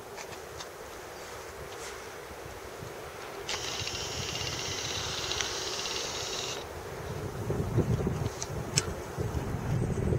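Approaching ST43 (060-DA) diesel-electric freight locomotive: a low engine rumble that swells over the last three seconds as it draws nearer, with wind on the microphone. In the middle, a steady high-pitched ringing tone lasts about three seconds and starts and stops abruptly.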